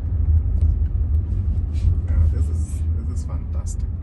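Steady low road rumble inside the cabin of a driverless Jaguar I-PACE electric car as it slows in city traffic, with faint voices.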